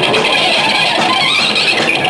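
Rock band playing live, loud, with electric guitars to the fore in a dense, continuous wall of sound.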